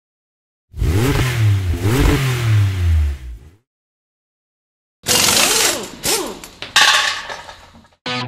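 A vehicle engine revs twice, its pitch rising and falling each time, then cuts off. About a second and a half later, a second loud burst of engine noise with sharp clattering hits comes in and fades toward the end.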